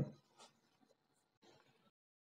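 Near silence, with the last of a spoken word fading out at the very start and a few faint, short rustling noises later on.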